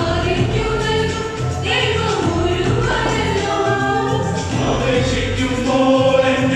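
A mixed choir of women and men singing a Christian convention song in harmony, holding long sung notes, over electronic keyboard accompaniment with a steady low bass line.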